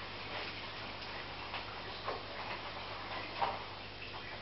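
Aquarium filter running: a steady low hum under irregular small bubbling pops and splashes of water at the surface, the loudest about three and a half seconds in.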